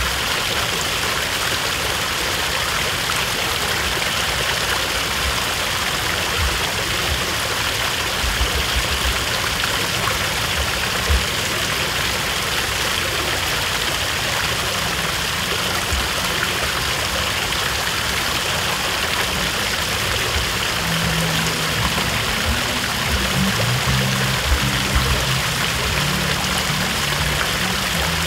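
Fountain water splashing steadily, an even rushing hiss with no breaks. Low music notes come in near the end.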